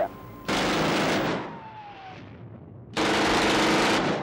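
Two long bursts of machine-gun fire, added as a war sound effect. The first starts about half a second in and fades out, and the second starts about three seconds in; a faint falling tone is heard between them.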